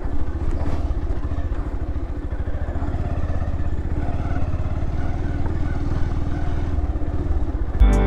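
Motorcycle engine running steadily at low speed, with a fast, even exhaust pulse, as the bike rides slowly over a rough dirt track. Music cuts in at the very end.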